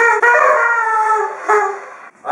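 A paper party horn blown hard: one long blast of about a second and a half, then a second, shorter blast that fades out.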